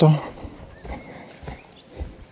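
Footsteps of a hiker on a dirt forest path: a few soft thuds about half a second apart.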